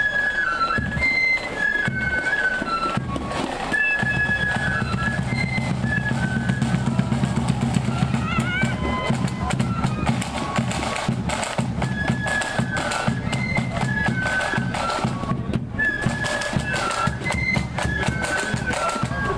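Flute band playing a marching tune: a high melody of flutes over drums, with the drumming becoming dense and steady about four seconds in.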